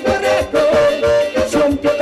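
Live band playing an upbeat song: a man singing over accordion chords, drums and electric guitars.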